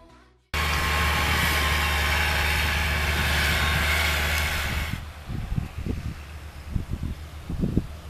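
New Holland T6050 tractor engine running hard under load as it pulls a plough close by, a steady low drone with loud hiss over it. About five seconds in it drops to a quieter, more distant engine sound broken by irregular low thumps.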